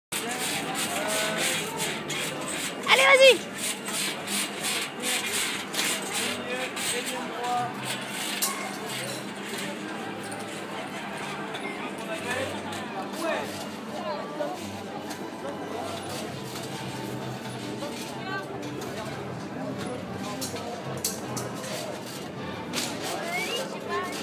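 Indistinct voices of people around the trampolines, with one loud, high-pitched call about three seconds in and many short clicks.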